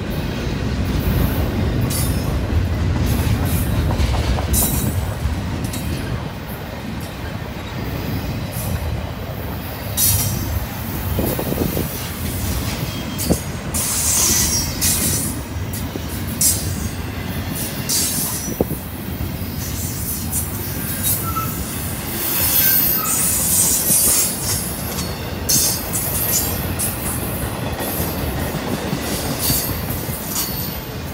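Double-stack intermodal freight cars rolling past: a steady rumble of steel wheels on rail, broken by repeated short, high-pitched screeches from the wheels.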